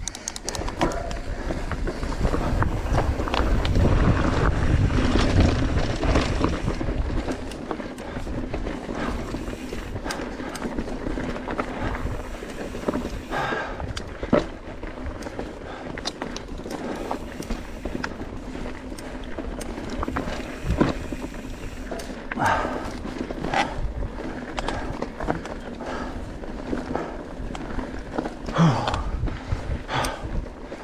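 Mountain bike riding down a loose, rocky dirt trail: the tyres crunch over gravel and the bike rattles over bumps, with wind rushing over the microphone, heaviest in the first few seconds.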